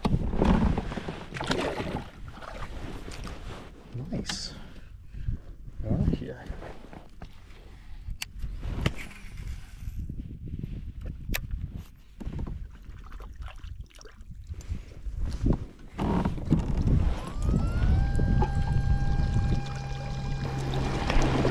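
Small electric kayak motor (Newport NK180) spinning up near the end: a rising whine that settles into a steady hum as the kayak gets under way. Before that, irregular knocks and water sloshing around the hull.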